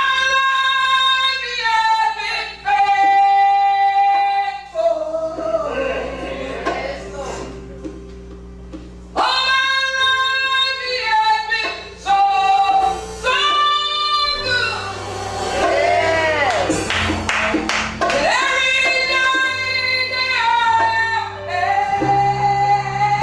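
Woman singing a slow gospel solo in long held notes, with a run of sliding notes about two-thirds of the way through, over sustained keyboard chords.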